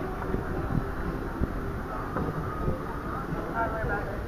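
Open-deck ambience on a cruise ship: a steady low rumble with irregular gusty thumps, and faint voices in the background.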